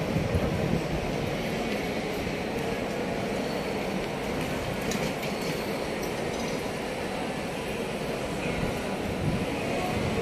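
Steady outdoor ambience heard while walking along a pedestrian street: a continuous low rumble with a few faint ticks.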